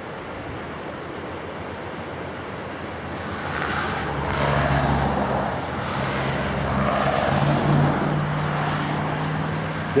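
Rushing river water with wind on the microphone, joined about four seconds in by the steady low drone of a diesel locomotive engine, getting louder.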